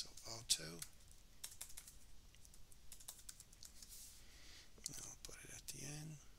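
Computer keyboard typing: scattered, quiet key clicks as a line of code is edited, with a few muttered words near the start and end.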